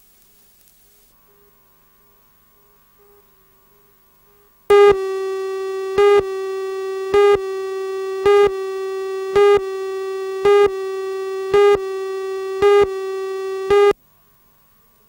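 Videotape countdown leader: a few seconds of near silence, then a steady buzzy electronic tone with a louder beep about once a second, about eight beeps in all, cutting off suddenly at the end.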